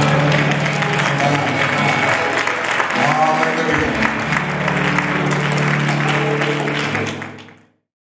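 Church congregation and choir applauding at the end of a song, with sustained keyboard notes underneath and voices calling out. The sound fades out about a second before the end.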